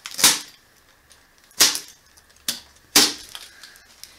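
Packing tape being ripped off a cardboard box: three short, sharp rips about a second and a half apart, with a fainter one just before the last.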